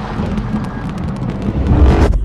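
Intro sound effects: a rapid clatter of small clicks over a low rumble, swelling into a loud low whoosh and hit near the end that cuts off sharply.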